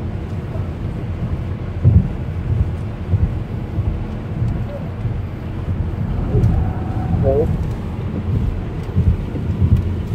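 Steady low rumble of road and engine noise inside a moving car's cabin, with a single thump about two seconds in.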